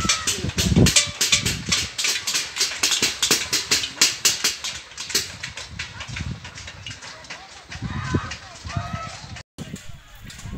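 Rapid, even banging of beaten metal plates, about three to four strikes a second, fading out about halfway through, with people shouting now and then. The din is raised to drive off a locust swarm.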